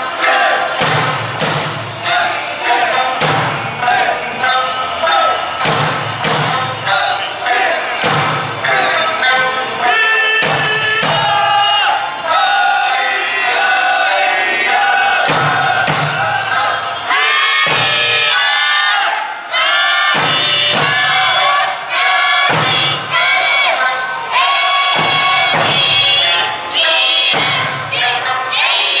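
Okinawan Eisa festival music: a folk song sung to a steady drum beat, with shouted calls over it.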